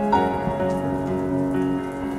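Slow instrumental piano music with sustained notes and a new chord struck just after the start, with a rain-like patter beneath it.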